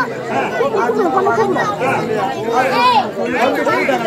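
Speech only: actors' spoken stage dialogue in Tamil, with no music under it.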